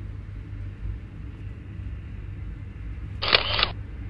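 A steady low hum, broken about three seconds in by a short sharp click and a rush of noise that lasts about half a second.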